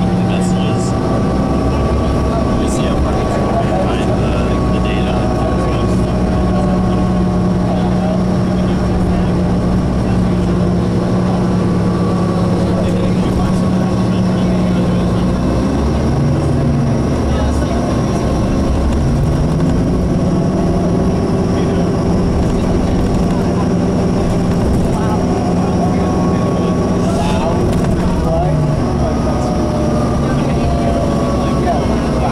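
Cabin sound of a 2003 New Flyer DE40LF diesel-electric hybrid bus (Cummins ISB six-cylinder diesel with Allison EP40 hybrid drive) running at road speed: a steady drivetrain hum over road and tyre noise. The hum drops away about halfway through and comes back a few seconds later rising in pitch.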